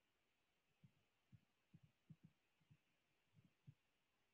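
Near silence with a run of about ten faint, short, low thuds at uneven spacing, starting about a second in.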